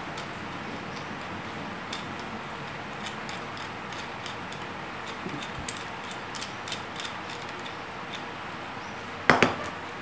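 Light clicks and rattles of a plastic tripod phone-holder clamp being handled, over a steady hiss. Near the end comes a single sharp knock as something is set down on the table.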